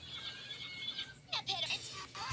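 Cartoon soundtrack playing from a TV: a brief, high, wavering vocal cry a little past halfway through, over faint hiss.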